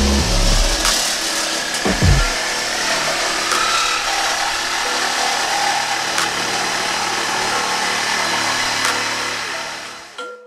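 Corded reciprocating saw running and cutting through a car's sheet-metal body panel, a steady noise throughout, fading near the end.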